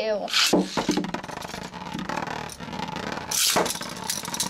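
Two metal-wheeled Beyblade spinning tops are launched into a clear plastic stadium. A sharp pull-and-release burst comes just after the start, then the tops spin, whirring and rattling steadily as they grind against the plastic floor. A louder burst of noise comes near the end.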